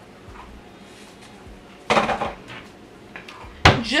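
A metal cooking utensil clattering against a skillet: a short burst of rapid clacks about two seconds in and another near the end.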